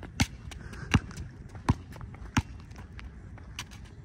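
Basketball dribbled on an outdoor asphalt court: a sharp bounce about every three-quarters of a second, with a few fainter knocks in between.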